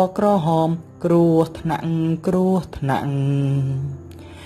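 A single voice singing a Khmer children's song in phrases of held notes with brief breaks, ending on one long low note near the end.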